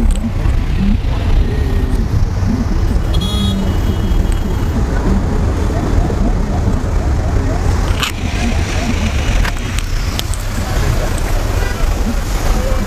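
Loud, steady low rumble of outdoor street noise with indistinct voices in the background, and a single sharp click about eight seconds in.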